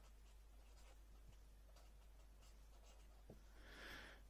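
Faint scratching of a marker pen writing on paper in short strokes.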